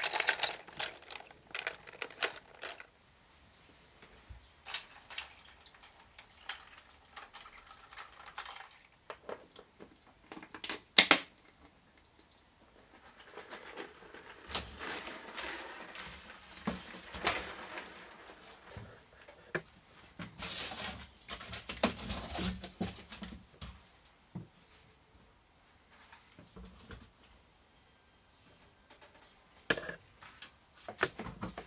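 Handling noise: plastic keycaps clattering in a plastic tub of liquid peroxide as a gloved hand works them, with scattered clicks and knocks. A sharp knock about eleven seconds in is the loudest, and there are rustling stretches in the middle as the cardboard and foil box is handled.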